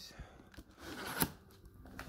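Large cardboard shipping box being handled: a brief rustle and scrape of cardboard and packing tape about a second in, ending in a sharp tap.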